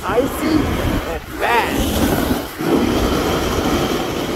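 Snowboard sliding and scraping over icy groomed snow, with wind rushing over the microphone. Two brief pitched glides cut through, one at the start and one about a second and a half in.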